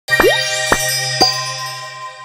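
Short musical logo jingle: three sharp hits about half a second apart, the first followed by a quick upward swoop, over a held chord and a low hum that slowly fade.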